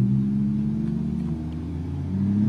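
A Volvo 760 Turbo and a Buick Regal with its 3.8-litre V6 accelerating hard off the line together in a drag race, their engines held at a steady full-throttle drone that eases off slightly toward the end.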